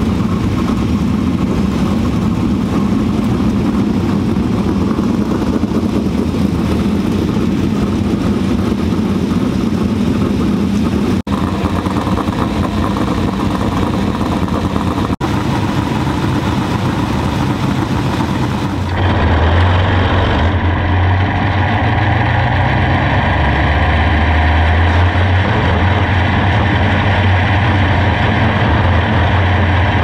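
Vehicle engines running steadily. About nineteen seconds in the sound changes to a 410 sprint car's V8 heard from on board: a loud, deep, steady rumble.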